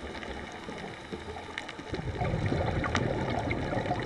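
Underwater sound picked up by the camera: a muffled low water rush that grows louder about two seconds in, with a few faint scattered clicks.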